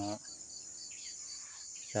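Steady high-pitched chirring of an outdoor insect chorus, with a faint, fast pulsing trill beneath it.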